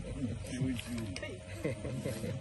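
Low, indistinct speech: murmured voices with no clear words, over a faint steady tone.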